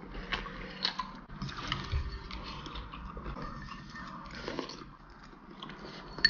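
A person chewing a mouthful of food, with a few light clicks in the first two seconds.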